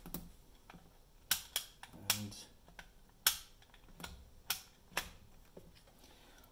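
A series of irregular sharp plastic clicks and taps from a digital multimeter being handled: its rotary dial being turned and its test probes picked up.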